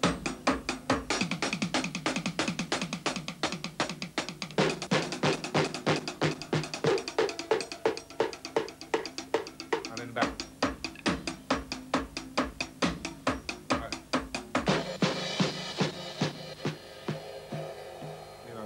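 Drum kit played solo: a fast, steady stream of snare, tom and kick strokes that wanders off the beat while keeping the tempo, then comes back in. It is a live-dub drumming demonstration. Near the end a cymbal crash rings and the strokes thin out.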